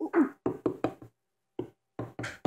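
Small plastic toy pony figures knocking against a wooden tabletop: a quick run of about five knocks in the first second, then one more about a second and a half in.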